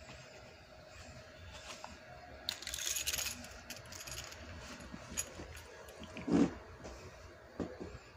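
Handling noise from a phone being moved against clothing: rustling and a few light metallic clinks, with a louder dull bump about six seconds in.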